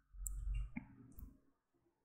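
A faint single click, like a computer mouse button, about three-quarters of a second in, over quiet low hum.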